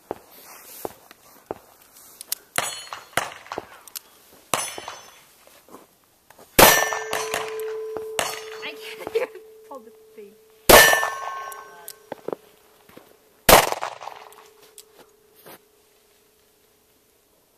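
Three revolver shots at steel plate targets, about four seconds and then three seconds apart, each hit followed by the steel plate ringing with one steady clanging tone that fades slowly. Quieter clicks and knocks come in the first few seconds before the first shot.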